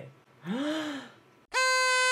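A short breathy vocal gasp whose pitch rises then falls. About a second and a half in, a party horn (blowout) is blown in one loud, steady buzzing note.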